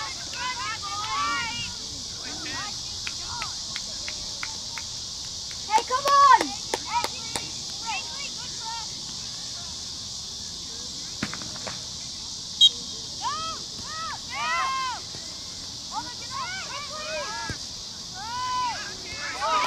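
Distant shouts and calls from players and spectators across an outdoor soccer field, coming in scattered bursts, loudest about six seconds in and again later. A steady high buzz of insects runs underneath, and there is one short high peep about two-thirds of the way through.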